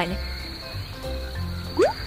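Soft background music with low bass notes that change a few times, under a steady high-pitched chirring.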